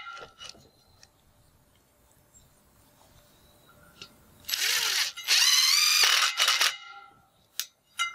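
Cordless power driver running a square-drive screw into an aluminum railing end bracket. It runs in two short bursts about halfway through, the motor whine rising in pitch as it spins up.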